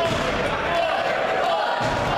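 Wrestling crowd shouting and calling out, echoing in a large hall, with a single thud on the ring near the end.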